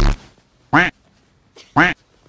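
Two short, loud, squawk-like calls about a second apart, each falling in pitch, just after a loud sound cuts off at the start.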